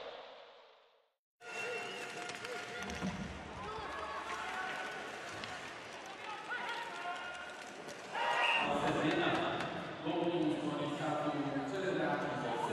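Sled hockey game sound from an ice arena: sticks and puck clicking on the ice under a background of crowd voices. The crowd grows louder about eight seconds in as play moves toward a goal. Before that, a short whoosh from the intro graphic fades into a moment of silence.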